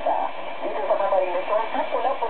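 A voice talking on a shortwave AM broadcast, played through an ICOM IC-R8500 communications receiver. It sounds narrow and thin, with a steady hiss of atmospheric noise under it.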